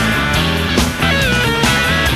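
Instrumental rock track: a lead electric guitar playing bent notes over a full band with bass and drums.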